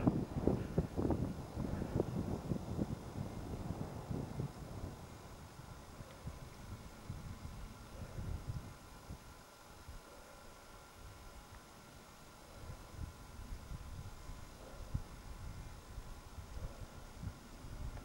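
Light wind buffeting the microphone in uneven gusts, dropping to a lull about halfway through and picking up again near the end.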